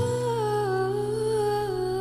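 A long held vocal note, hummed or sung on a vowel, that steps down a little in pitch and then wavers slowly, over a steady low sustained accompaniment, in a slow OPM (Filipino pop) love ballad.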